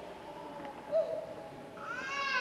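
A baby's short whimper about a second in, then a higher, longer cry beginning near the end.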